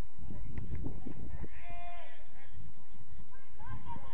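A distant drawn-out shout of a voice on a football pitch, about one and a half seconds in, over a constant low rumble like wind buffeting the microphone.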